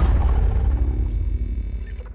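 Sound effect for an animated logo: the deep rumbling tail of a heavy impact, with faint steady tones above it, fading away.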